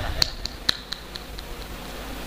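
A quick series of about seven sharp clicks, roughly four a second, that grow fainter and stop about a second and a half in.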